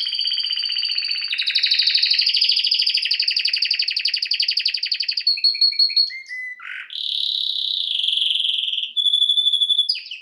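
Domestic canary singing a long, nearly unbroken song of very fast trills. The phrases change every second or two, with a short break about six seconds in before the trilling picks up again.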